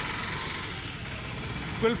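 Steady outdoor street background noise with a low rumble, picked up on a field reporter's open microphone. A man starts speaking near the end.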